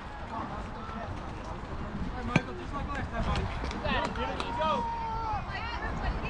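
Scattered voices of players and spectators calling out across a youth baseball field, with one longer drawn-out call near the end. A single sharp knock comes about two and a half seconds in.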